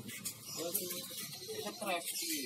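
Faint, indistinct talk from people nearby over a steady high hiss, with no clear non-speech event.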